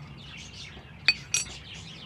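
Two sharp, ringing metallic clinks about a quarter second apart, a little past a second in: loose steel engine brackets knocking as they are handled. Birds chirp throughout.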